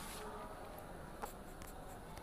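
Faint steady background hiss of a quiet room, with one small tick a little over a second in.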